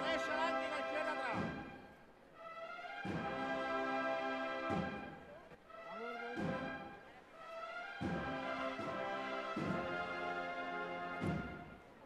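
Processional band music: held brass chords in short phrases, each opened by a drum stroke, with brief lulls between phrases.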